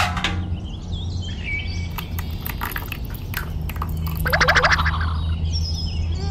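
Birds chirping over a steady low hum, with a loud run of quick trills about four and a half seconds in. A sharp click comes right at the start.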